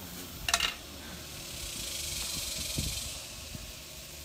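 A brief sharp sound about half a second in, then a soft hiss that swells and fades over about two seconds.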